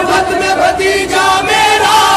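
Male chanting of a noha, a Shia lament sung in Urdu, the voice holding and bending long melodic notes.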